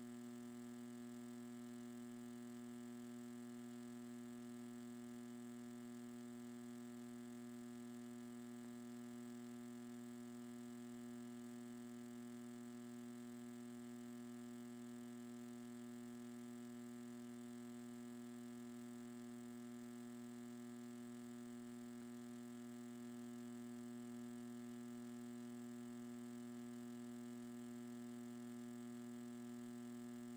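Faint, steady electrical hum with a buzzy edge: one low pitch with many overtones, unchanging throughout.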